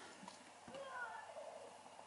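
Faint, distant voices, with a couple of soft knocks in the first second.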